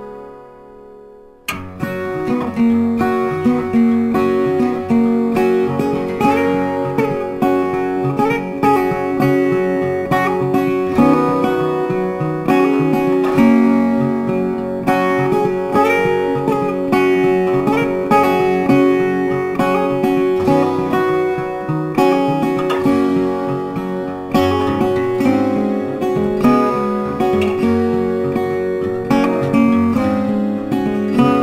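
Background music of plucked and strummed acoustic guitar. A held chord fades out, then about a second and a half in a busy run of picked notes starts and carries on steadily.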